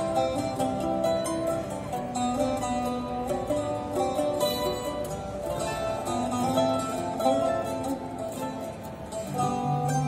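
Classical mandolin, mandola contralto and liuto cantabile playing together as a plucked-string trio, a picked melody over lower held notes.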